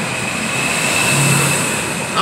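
Road and engine noise of a moving car, heard from inside the cabin: a steady rushing noise with a faint high whine. It swells a little past the middle and then eases.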